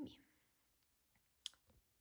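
One sharp click from the laptop's keys or trackpad about one and a half seconds in, with a few fainter clicks around it, as a print command is given on the MacBook Air; otherwise near silence.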